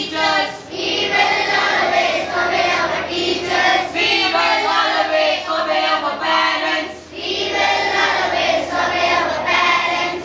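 A large group of children's voices in unison, with short breaks about half a second and seven seconds in.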